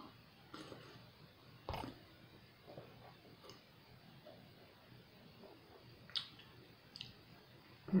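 Faint mouth clicks and lip smacks of a man tasting a sip of hard cider, with a soft knock a couple of seconds in and a short 'hmm' at the end.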